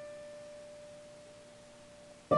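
A single electric guitar note rings on and slowly fades, leaving an almost pure steady tone.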